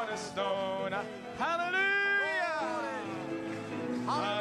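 Congregation singing a gospel chorus together. About midway, one long sung note rises, is held, and then falls away.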